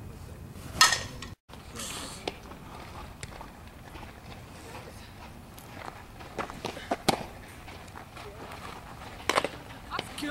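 A softball bat strikes a pitched ball with one sharp crack about a second in. Later come several short knocks as softballs reach a catcher working a blocking drill, the loudest a little after the middle.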